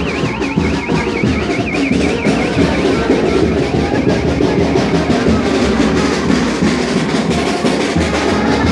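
Street carnival band playing: a big bass drum and other percussion keep a steady, driving beat under brass horns. A high warbling tone sounds over the top for the first two seconds or so.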